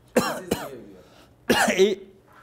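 A man coughing: two quick short coughs near the start, then another cough near the end.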